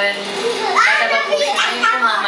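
High-pitched voices squealing and laughing, heard through a television's speaker.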